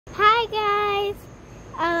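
A young girl's voice singing two drawn-out notes, the first bending up and down and the second held steady for about half a second, then a short pause before she starts to speak near the end.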